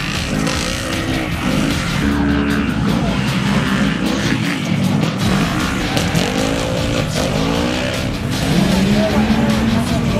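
Side-by-side UTV race engines revving hard through a dirt turn, their pitch rising and falling again and again as the cars go by, with tyres spinning and throwing dirt.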